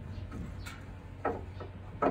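Faint clicks and handling noise of a metal tie-down strap hook being slipped into the gap between tailgate and body, over a steady low hum. A brief louder sound comes about a second and a quarter in.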